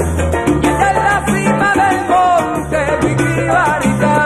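Salsa music, an instrumental passage: a bass line under a bending lead melody, with percussion.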